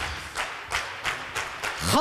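Studio audience clapping, heard as a string of separate claps at about three a second, just after the music cuts off. A man's voice starts up near the end.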